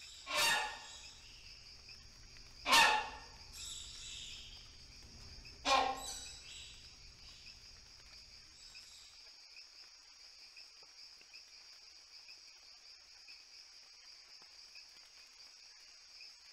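Rhinoceros hornbill giving three loud calls, about two and three seconds apart, over a steady high-pitched drone of insects.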